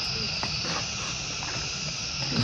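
A steady, high-pitched insect chorus drones without a break, with a few faint voice sounds in the background.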